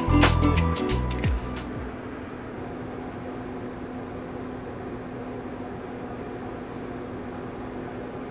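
Background music with a beat and bass line that fades out about a second and a half in, leaving a steady low hum.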